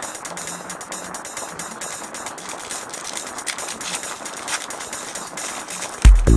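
Foil wrapper of a trading-card pack crinkling as it is handled and torn open: a continuous rustle made of many small, irregular crackles.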